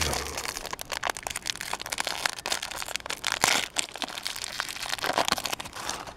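Small metallic foil wrapper crinkling as fingers pick and peel it open, a dense run of small crackles.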